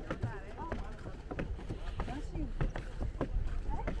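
Footsteps knocking on wooden stair treads as several people climb, under people's voices talking.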